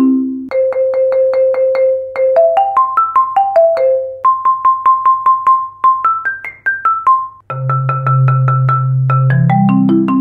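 Marimba played with two Dragonfly Percussion M4 medium-hard mallets: fast repeated strokes on single notes and short stepwise runs in the middle register, then from about two-thirds of the way in a low note sustained under rapid strokes. A faint steady background hum sits underneath.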